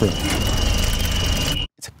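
Horror-trailer sound design: a steady high-pitched squeal over a dense, noisy rumble, cutting off suddenly near the end.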